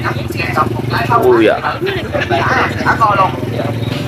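People talking over a motorbike engine running steadily underneath with a low hum.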